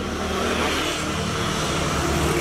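A road vehicle passing by, a steady rush of engine and tyre noise that swells about half a second in over a low rumble.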